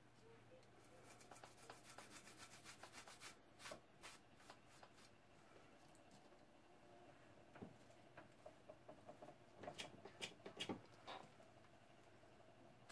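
Faint rubbing of an acetone-dampened cloth over the painted surface of a tumbler, wiping away layers of paint. It comes in two spells of quick, short strokes, the second a little louder.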